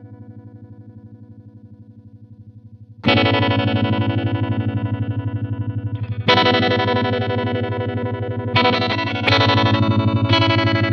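Electric guitar chords played through a Maestro Mariner Tremolo pedal, the volume pulsing quickly and evenly. A held chord fades out first. New chords are struck about three seconds in, again at about six seconds, and twice more near the end.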